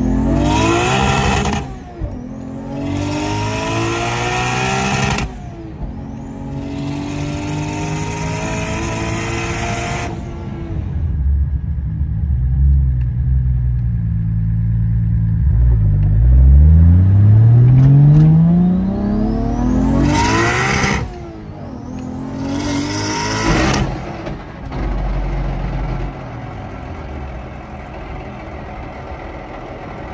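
A Nissan S13's swapped 1JZ inline-six heard from inside the cabin, accelerating hard in several pulls. The engine pitch climbs and drops sharply at each gear change, about two, five and ten seconds in and again between about sixteen and twenty-four seconds. Near the end it settles into steadier, quieter running.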